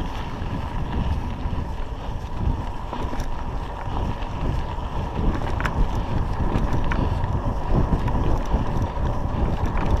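Wind buffeting the microphone of a bicycle-mounted action camera as the bicycle rolls along a rough dirt road, its tyres rumbling over the ground. Two brief ticks a little past the middle.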